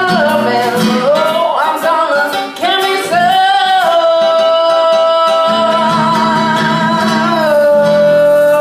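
A woman sings with acoustic guitar accompaniment: a melodic vocal run, then a long held note from about four seconds in that steps down to a lower held note near the end, over steady guitar strumming.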